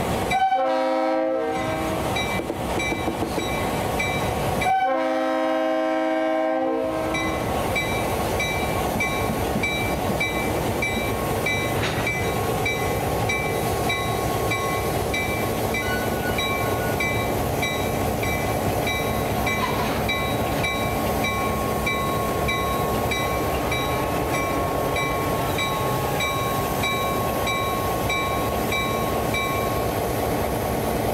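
EMD GP9 diesel locomotive sounding its horn twice, two long chord blasts, the signal that it is about to move off, while its bell rings steadily. Its 16-cylinder two-stroke diesel then runs under load as it pulls slowly forward with a string of tank cars, the bell ringing on.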